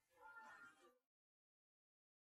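Very faint pitched vocal sound in two short swells, the tail of an isolated a cappella vocal track, cutting off to dead silence about a second in.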